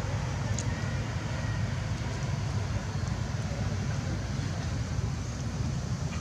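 Steady low rumble of outdoor background noise, with a faint short tick about half a second in.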